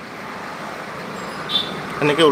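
Steady background traffic noise, with no other clear event.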